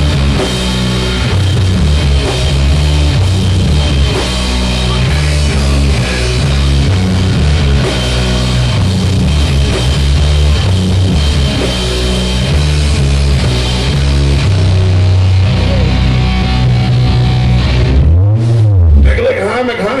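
Live sludge metal band playing with distorted guitar, bass and drums. The full band stops about two seconds before the end, leaving one last low note that bends up and back down.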